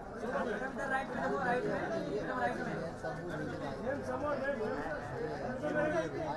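Several people talking at once: overlapping chatter with no single voice standing out.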